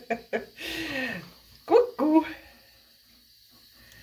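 A person laughing: a few last short bursts of laughter, a breathy sigh, then two short voiced laughs about two seconds in, after which it goes quiet.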